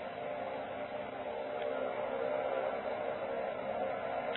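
Steady background hiss with a faint hum under it, with no speech, the room and recording noise of an old lecture tape.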